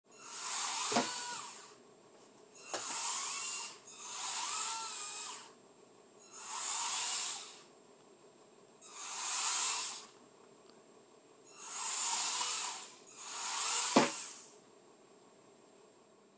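Gear-motors taken from low-cost electric screwdrivers whir in seven bursts of a second or so each, their whine bending in pitch as they wind the tendons that move a humanoid robot's arms. A sharp click comes with some of the bursts, loudest about fourteen seconds in.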